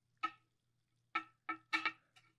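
Four short ringing clinks of a glass coffee carafe against ceramic mugs as coffee is poured, each ringing at the same pitches, over a faint steady low hum.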